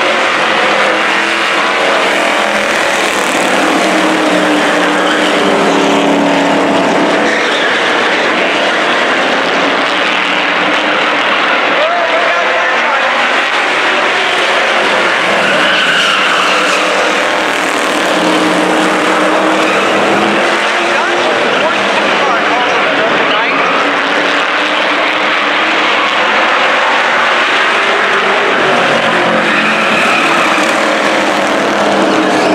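A pack of street stock race cars racing on a short oval, their engines loud and continuous, swelling and falling in pitch in waves as the field comes past.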